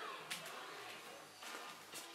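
Quiet room tone in a pause between speech, with a couple of faint brief noises.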